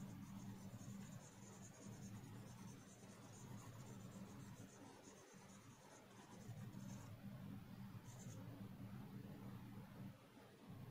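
Faint scratching of a pencil on drawing paper as graphite shading is laid down, over a low steady hum.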